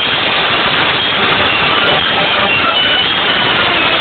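Philharmonic wind band playing a loud, sustained passage. The recording is a dense, harsh haze in which the melody is only faintly heard.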